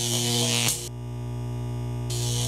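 Outro music: a held synthesizer chord over a steady bass drone. The hissy upper layer cuts out about a second in, leaving only the sustained tones.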